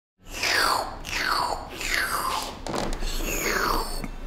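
A voice-like intro sound effect of about five falling swoops, one after another roughly every two-thirds of a second.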